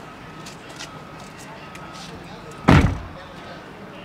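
A Chevrolet Corvette C8's passenger door slammed shut once, about two and a half seconds in: a single loud thud that dies away quickly.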